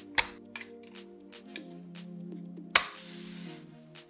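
Background music, with sharp plastic-and-metal clicks of cable connectors being pushed into the ports of an Orico Thunderbolt 3 docking station: one just after the start and a louder one about three-quarters of the way through, followed by a short rustle of handling.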